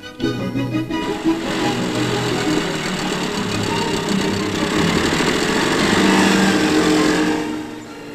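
Newsreel orchestral music over a small two-stroke engine (the midget racer's 98cc) running. The engine noise swells about a second in and fades away near the end.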